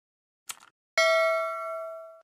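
Subscribe-button end-screen sound effects: a single mouse click about half a second in, then a bell ding about a second in that rings on with several overtones and slowly fades.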